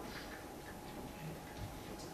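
Quiet room tone in a lecture hall with a faint steady hum, and no distinct sound event.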